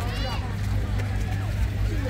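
Crowd babble: many people talking at once, with a high voice calling out right at the start, over a steady low hum.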